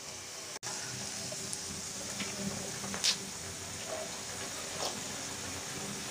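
Batter-coated potato strips deep-frying in hot oil in an aluminium frying pan: a steady sizzle that cuts out for an instant under a second in, with a couple of faint ticks later on.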